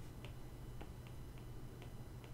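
Faint, irregular ticks of a stylus tip on a tablet screen while handwriting, about five in two seconds, over a steady low hum.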